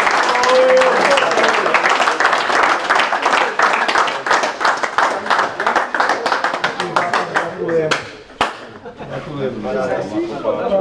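A group of people clapping their hands in quick, uneven applause, with voices mixed in. The clapping dies away about eight seconds in, two sharp clicks follow, and then there is talking.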